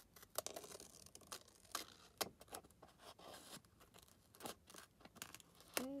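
Scissors cutting through a printed paper sheet: a string of faint, irregular snips and paper rustles.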